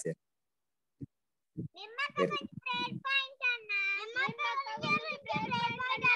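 A child singing in a high voice, starting about two seconds in after a near-silent pause, with some notes held steady.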